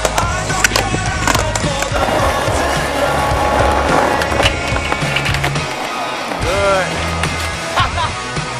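Skateboard on concrete: several sharp clacks of the board in the first second and a half, then the wheels rolling over the concrete, with rock music playing underneath. Another sharp clack comes near the end.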